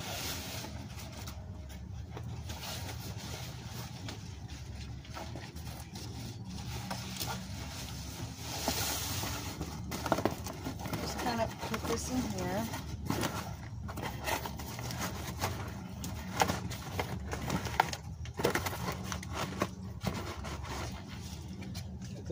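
Cardboard box being handled and lowered over a small tree, with scraping, rustling and light knocks of cardboard and leaves from about ten seconds in, over a steady low background rumble.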